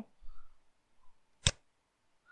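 A single sharp computer mouse click about one and a half seconds in, as text in the browser's search box is selected.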